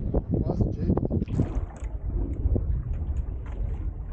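Wind rumbling on the microphone aboard a small boat at sea, a steady low buffeting, with a few short bits of voice in the first second and a half.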